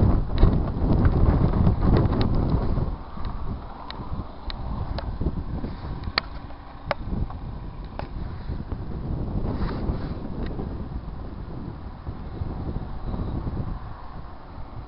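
Wind buffeting the microphone outdoors, loud and rumbling for the first few seconds, then easing to a lower steady rush with a few short clicks.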